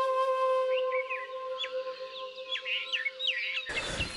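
Background music: one long held flute note that softens about a second in and cuts off just before the end. Small birds chirp over it repeatedly.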